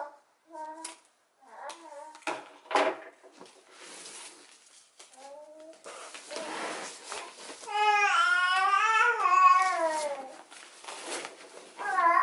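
A young child's high-pitched babbling and whining, in short bits early on and one long, wavering cry about eight to ten seconds in, amid the rustle of ribbon being handled.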